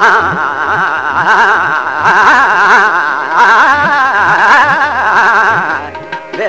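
Male Hindustani classical voice singing a long vowel with fast, wavering ornaments (a taan on 'aa'), over tabla accompaniment whose bass drum bends in pitch. The voice breaks off just before the end.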